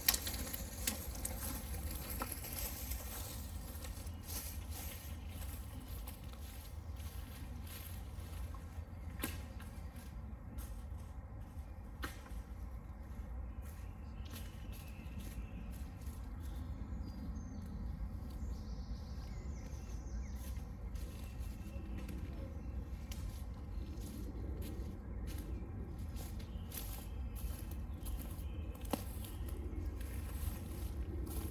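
Light rain coming back: scattered drops tick and patter on leaves close by, over a steady low wind rumble.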